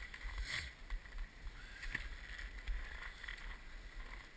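Low steady rumble of a ski-area magic-carpet conveyor belt carrying skis uphill, with faint scuffs and knocks of skis and poles.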